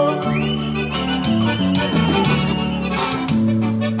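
A regional Durango conjunto playing an instrumental passage of a polka-rhythm corrido: accordion melody over bajo sexto and bass notes that change on the beat, with a high note held through most of the passage.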